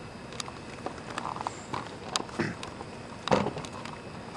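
Light rustling and scattered small clicks from handling script pages, with one louder sharp knock about three seconds in.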